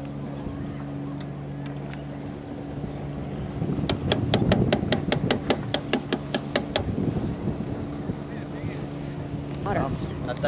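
Boat engine idling with a steady low hum. For about three seconds in the middle it is joined by a louder rumble and a quick run of sharp clicks, about five or six a second.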